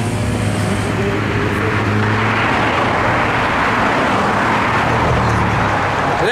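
Road traffic: a vehicle engine hums steadily while a car passes by, its tyre noise swelling and then fading in the middle.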